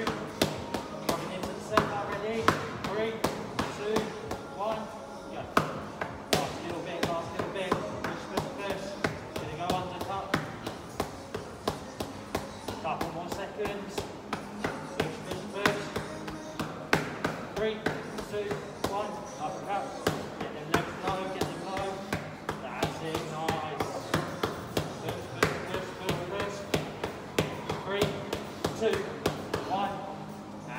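Boxing gloves smacking focus mitts in quick, irregular punch combinations, a few sharp hits a second, over gym background music with singing.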